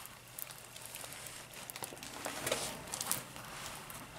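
Clear plastic film over a diamond painting canvas crinkling and rustling in irregular bursts as the canvas is handled and shifted.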